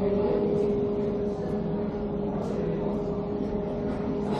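Steady machine hum with one constant mid-low tone that holds unchanged throughout.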